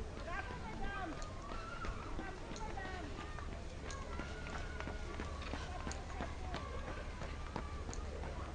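Faint, distant voices of people talking and calling, over a steady low rumble, with scattered light ticks.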